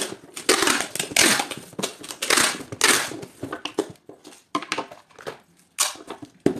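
Clear packing tape being pulled off the roll in several long noisy pulls, about half a second each, and pressed onto a cardboard box to seal it, followed by shorter tears and handling noises.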